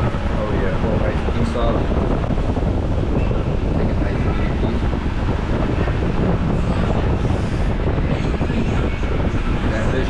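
Steady rush of air buffeting the microphone, a loud low rumble that doesn't let up, with faint voices talking in the background.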